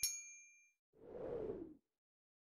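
Notification-bell ding sound effect as the bell icon is clicked: a sharp click with a bright chime ringing out for about half a second. About a second in comes a soft whoosh lasting under a second.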